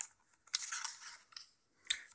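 A page of a hardcover picture book being turned: a short paper rustle about half a second in, with a few light clicks of handling around it.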